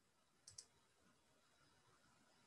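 A computer mouse double-clicked once, two quick sharp clicks about half a second in; otherwise near silence.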